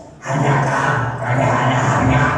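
A man's voice talking loudly in Sundanese through the stage PA loudspeakers, in short runs with a brief pause at the start.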